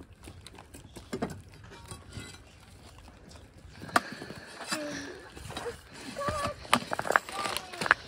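Scattered knocks and clunks of wooden concrete-form boards and bracing being pried off and handled while stripping forms from concrete footings, with a few sharper knocks in the second half.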